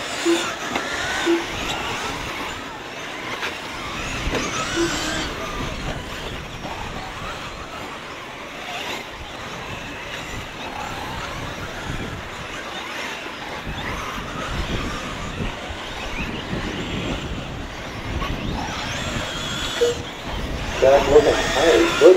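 Electric RC truggies racing on a dirt off-road track: the high motor whine rises and falls as the cars accelerate and brake, over a steady hiss of tyre and track noise. Faint voices are heard underneath, and a voice comes in near the end.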